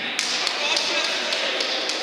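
Indistinct voices of players calling out on an indoor futsal court, with several short, sharp taps scattered through the moment, from the ball or shoes on the hall floor.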